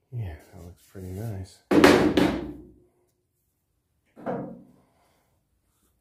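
A man's voice in short wordless mutters and grunts, with a loud strained outburst about two seconds in and another short grunt after four seconds.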